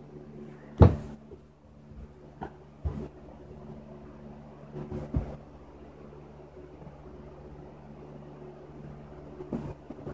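Scattered knocks and thumps, the loudest a sharp knock about a second in and smaller ones around three and five seconds and near the end, over a steady low hum.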